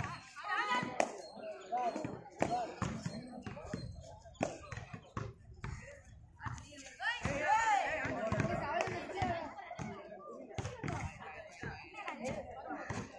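Shouting voices of kabaddi players and onlookers during a raid, with scattered sharp claps, slaps and stamps. One voice rises to a loud, drawn-out shout about seven seconds in.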